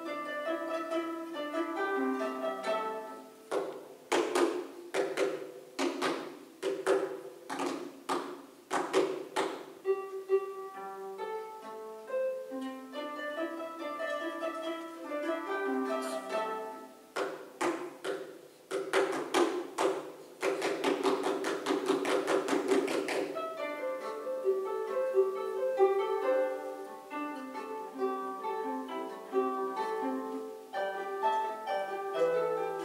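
Two concert harps playing a duet of plucked notes, broken by runs of sharp percussive hits, a rapid flurry of them about two-thirds of the way through.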